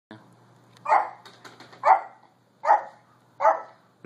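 A Yorkshire terrier barking four times, short sharp barks about a second apart.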